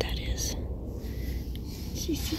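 A soft whisper about half a second in, over a steady low rumble inside a vehicle cabin.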